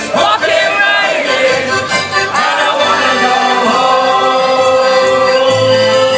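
Live band music with several voices singing together, ending on a long held note.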